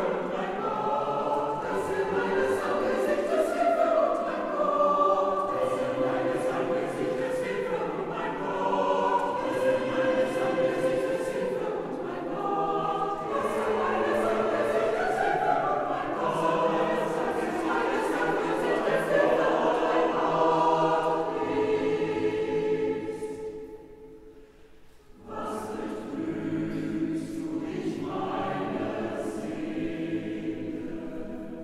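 Mixed choir singing sacred a cappella music, a psalm setting or similar, in a reverberant church. About 23 seconds in, a phrase ends and the sound dies away in the church's echo. The voices come back in after about two seconds.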